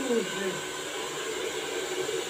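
Handheld hair dryer running steadily while blow-drying hair, a constant blowing noise with faint steady high tones.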